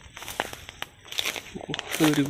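Light rustling and crackling with a few sharp clicks scattered through, from movement among dry grass and plants.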